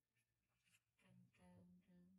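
Near silence, with a few faint clicks in the first second and a faint murmured voice in the second half.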